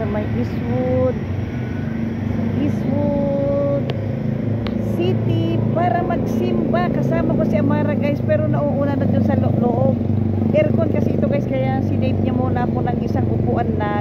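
Street traffic: a vehicle engine running as a steady low hum, with people's voices talking over it from about four seconds in.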